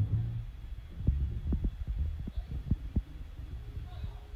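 Treadmill running with a low steady hum under regular footfalls on the belt, about three thuds a second.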